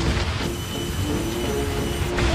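Cartoon sound effect of a big snowball rolling down a snowy hill: a steady rumble with a thin high whine joining about half a second in.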